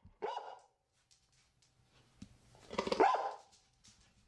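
Boston terrier barking twice: a short bark just after the start and a louder bark about three seconds in.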